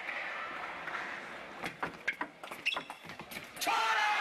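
Table tennis rally: the celluloid ball clicks sharply off bats and table several times, unevenly spaced, then the hall's crowd noise swells suddenly with a shout near the end as the game point is won.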